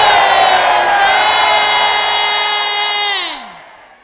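A single voice shouts one long, loud, held cry for about three seconds, over a congregation cheering. Near the end the cry drops in pitch and fades away.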